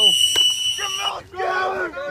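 A coach's whistle blown once, a steady shrill tone lasting about a second, signalling the start of a one-on-one rep; shouting voices follow.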